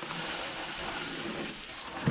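Plastic wrapping rustling steadily as a boxed item is lifted and pulled up out of a cardboard box.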